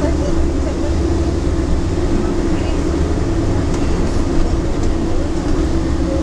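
Steady engine and road rumble inside a moving long-distance coach, with a constant low drone.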